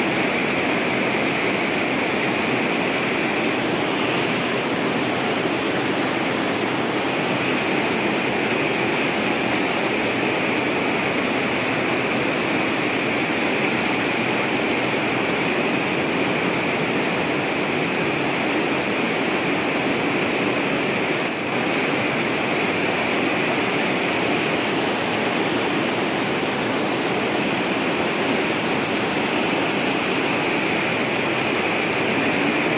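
Water gushing from an inlet pipe into an open filter bed at a water treatment plant, a steady, unbroken rushing.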